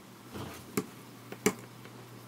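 Wooden knitting needles clicking lightly against each other while stitches are purled, a few sharp clicks with the loudest about a second and a half in.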